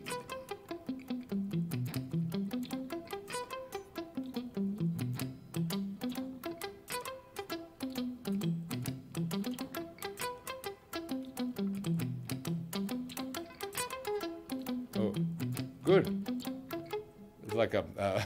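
Ibanez electric guitar playing sweep-picked arpeggios that climb and fall again over and over. The note rhythms are improvised and syncopated rather than even 16th notes.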